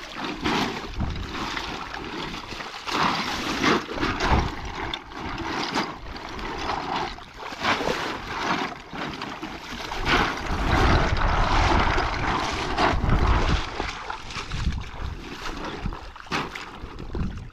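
Shallow river water splashing and sloshing irregularly as a full sack is dunked, swished and lifted to rinse it, with feet wading through the water.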